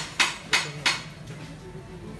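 Three sharp metallic taps about a third of a second apart in the first second, as a cook's utensil strikes the cast-iron takoyaki pans, over a steady low hum.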